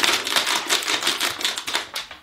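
Empty plastic water bottle tied inside an old sock being squeezed and twisted by hand, crinkling in a continuous rapid crackle of clicks, done to call the dog over to its toy.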